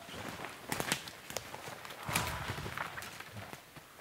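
Footsteps through forest undergrowth and dead ferns, with sharp twig snaps clustered about a second in, then brushy rustling of boots moving through the brush.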